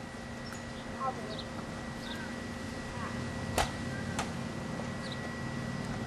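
RipStick caster board rolling on a concrete driveway, with one sharp click a little over halfway through.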